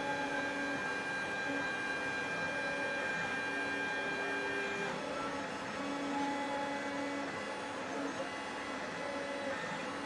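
Desktop 3D printer at work, its stepper motors whining as the print head moves. The tones change pitch every second or so with each move, over a steady hiss.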